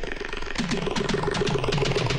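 Instrumental break in a Bollywood film song: a fast run of drum strokes with short, repeated falling pitch slides over a steady held note, the lead-in to a flute melody.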